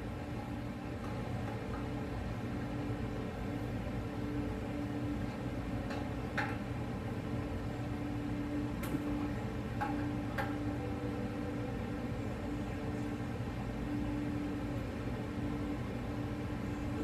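Steady low workshop hum, with a few faint clicks from the middle onward as a wrench tightens the hose-end fitting onto a steel-braided #6 PTFE fuel line held in a bench vise.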